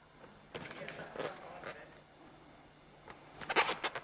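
Faint squeaks and rustles of a rubber balloon's neck being stretched and knotted by hand, with a few sharper squeaks about three and a half seconds in.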